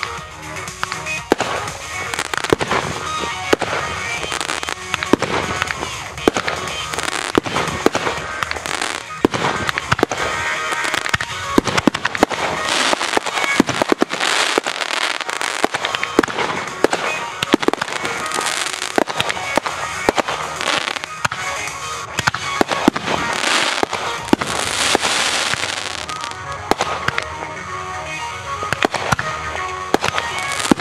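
Aerial fireworks going off in a dense, irregular run of sharp bangs that continues throughout, many bursts overlapping one another.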